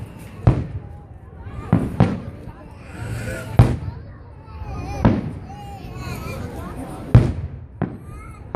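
Aerial fireworks shells bursting, about six sharp booms a second or two apart, the loudest near the end, over a crowd's chatter.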